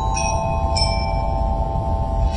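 Cantonese opera instrumental accompaniment: held tones with two ringing struck notes, one just after the start and one before the middle, over a steady low hum.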